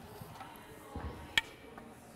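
A tennis ball bouncing off a racket's strings: one sharp pop about one and a half seconds in, with a fainter tap a little before it.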